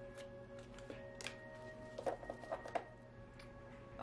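Soft background music with long held notes, under a few light clicks of oracle cards being shuffled and drawn by hand.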